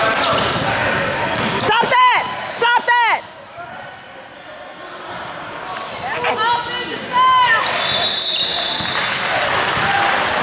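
Sneakers squeaking on a gym floor: sharp, arching squeals about two seconds in, again around three seconds, and several more between six and seven and a half seconds. Under them a basketball is being dribbled, its bounces echoing in the large hall.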